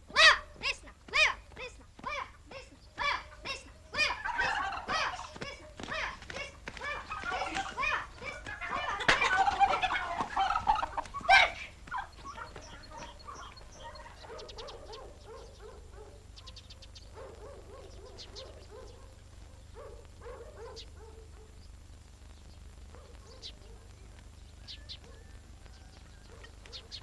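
Domestic turkeys gobbling. First comes a run of short, evenly spaced calls, about two a second, then a loud stretch of many gobbles overlapping. From about twelve seconds in, the gobbling turns fainter and comes in scattered bursts.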